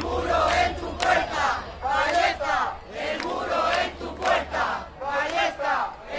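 Crowd of protesters chanting a slogan together, the shouted phrases coming in rhythmic bursts about once a second.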